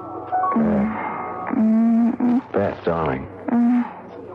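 A short musical bridge on mallet percussion dies away, then a woman moans and groans in drawn-out, wavering sounds with falling pitch, like someone half-conscious and coming round after a blow to the head.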